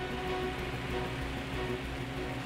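Steady rushing drone of a light aircraft in flight, the Piper J-3 Cub's engine and propeller blended with the airflow noise, with a few faint steady tones running through it.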